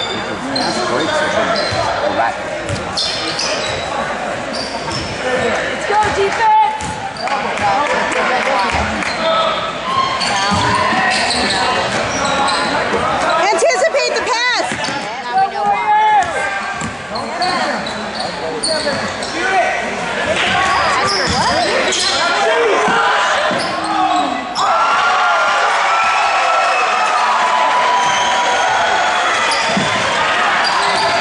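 Basketball game sound in a gymnasium: a basketball bouncing on the hardwood court amid spectators' and players' voices, echoing in the large hall.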